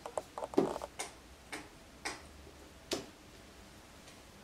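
Scattered light clicks and knocks, about seven in four seconds at uneven spacing: objects on a small side table being handled as a hardback book is picked up from it.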